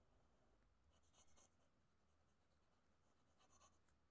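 Faint scratching of a black felt-tip marker on paper, two short strokes: one about a second in and another near the end.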